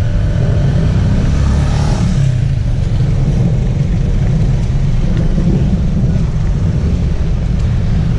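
A car moving off close by, its engine loudest in the first couple of seconds, over a steady low street rumble.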